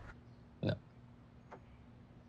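A single short spoken "no" about half a second in, then quiet room tone with a faint steady hum and a faint click.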